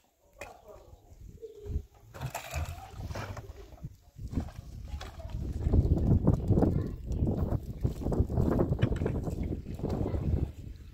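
Small glass tea glasses being washed by hand in a bowl of water: water sloshing and glass lightly clinking. About five seconds in, a louder low rumbling noise takes over.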